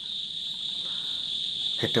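Steady, high-pitched chirring of crickets.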